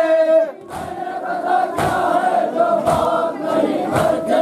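A crowd of men chanting an Urdu noha lament in unison, with sharp chest-beating (matam) slaps about once a second keeping the beat.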